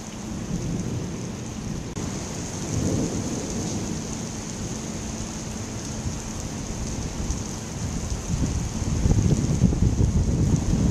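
Heavy rain pouring onto wet pavement in a thunderstorm, a steady hiss. Low rumbling of thunder swells about three seconds in and builds louder near the end.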